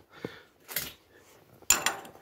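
A metal band clamp being handled and fitted onto the ridged aluminium hose coupling of a water pump: a small click, a brief rustle, then a sharp metallic clack near the end.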